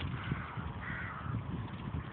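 A crow cawing about a second in, a short harsh call, over a steady low rumble from riding a bicycle across open ground in the wind.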